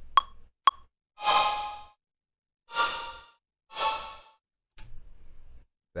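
Two metronome clicks about half a second apart, then three separate flute-sample notes triggered from controller pads, each breathy and fading out after about half a second, about a second apart. Played this way the notes sound terrible.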